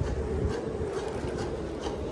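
Segway Ninebot ES4 electric kick scooter rolling over rough, cracked asphalt: a steady rumble with fine rattling from the bumps, taken by its dual suspension.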